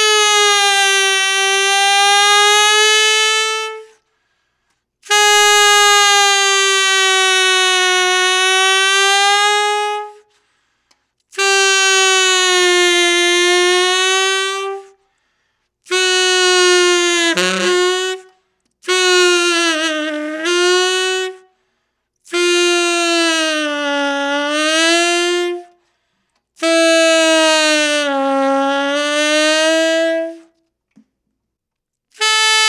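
Tenor saxophone on a 1960s Otto Link Florida Super Tone Master metal mouthpiece with its original four-star tip opening, playing a string of long held notes at about the same pitch with short breaths between. Each note is bent down in pitch and back up, gently at first and then deeper: a note-bending test of how far the mouthpiece lets the pitch be pulled.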